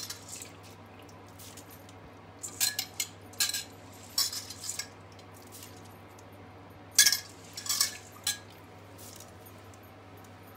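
Stainless steel bowl and colander clinking, with bangles jingling against the metal, as handfuls of rice are scooped from one bowl into the other: a few short clusters of clinks, the loudest about seven seconds in. A faint steady low hum runs underneath.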